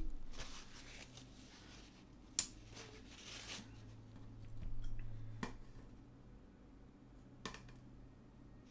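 Paper towel rustling and crumpling in the hand, in several short bouts, with a few sharp clicks and taps of small objects; the loudest click comes about two and a half seconds in.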